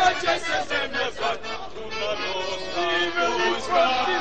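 A group of voices singing a song together in chorus.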